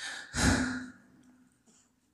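A man breathing into a close microphone: a short breath in at the start, then a louder sighing breath out about half a second long that blows on the mic, fading within the first second and a half.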